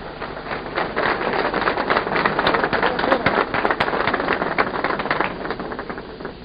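Audience applauding. The clapping swells about a second in and thins out near the end.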